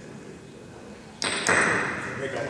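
Quiet hall tone, then about a second in a sudden thump, a second sharp knock a moment later, and a short rush of noise that fades.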